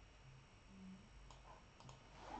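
Near silence with a few faint computer mouse clicks, one about a second in and a couple near the end.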